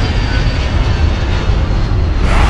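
Loud, steady low rumble with a hiss on top, a cinematic sound effect laid under an animated logo intro.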